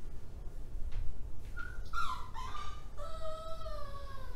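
A pet's long, drawn-out whine, starting about a second and a half in, holding for a couple of seconds and sagging in pitch at the end.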